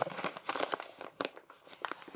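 Paper sugar bag crinkling as its top is folded and rolled closed by hand, a run of irregular crackles.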